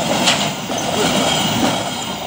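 Train running past close by: a steady rolling noise of wheels on rail, with a sharp click about a quarter second in and a faint high wheel squeal in the second half.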